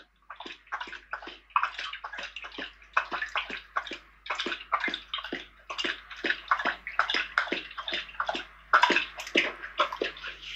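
A dog lapping milk from a stainless steel bowl: quick, wet, repeated laps of the tongue, several a second.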